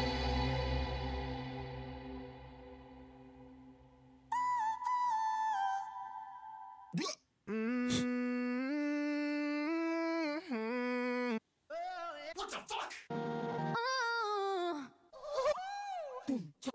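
An ambient pad fades out over the first few seconds. Then a run of short sung vocal samples is auditioned one after another in a sample browser, each starting and cutting off abruptly, some held on stepped notes and some bending in pitch.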